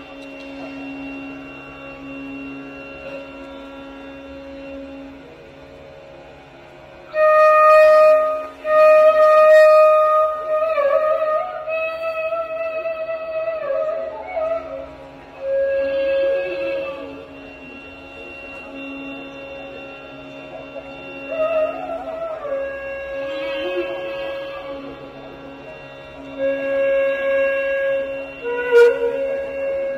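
Carnatic bamboo flute playing slow raga Saramati phrases over a steady drone. The flute comes in loudly about seven seconds in, with long held notes joined by gliding ornaments.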